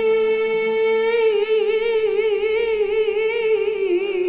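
A woman's singing voice holding one long note alone, steady at first, then with a wide, even vibrato from about a second in, and dipping slightly in pitch near the end.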